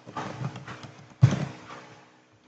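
A short run of computer keyboard keystrokes in two clusters, the second starting a little over a second in and louder than the first.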